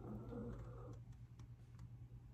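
Faint handling noise: a soft rustle as the canvas and camera are moved, followed by a few light ticks, over a steady low hum.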